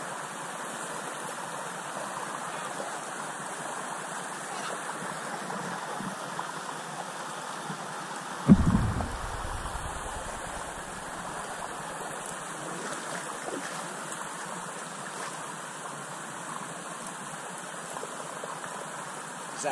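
Steady rush of flowing river water, with one sudden low thump about halfway through.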